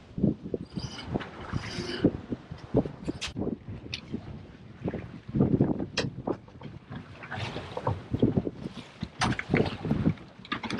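Choppy water slapping and splashing against a small boat's hull in irregular thumps, with wind buffeting the microphone.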